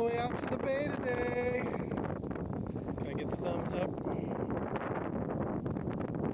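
Wind buffeting the microphone steadily, with a few brief high-pitched voice sounds in the first two seconds and once more about halfway through.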